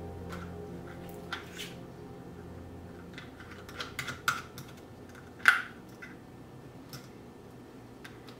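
Amber glass spray bottles with plastic trigger sprayers being handled and set on a counter: a scattering of short clicks and knocks, with the loudest knock a little over halfway through. Soft background music fades out during the first few seconds.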